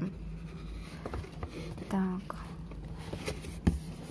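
Light rustling and a few clicks from a gift box and its packaging being handled, with one sharp knock near the end. A short voiced hum is heard about halfway through.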